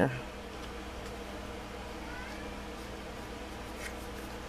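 A steady low buzzing hum of room background noise, unchanging throughout.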